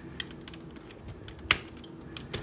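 Hard plastic parts of a TFC Toys Iron Shell transforming robot figure clicking as they are handled, with one sharp snap about one and a half seconds in as a tab is pushed into place.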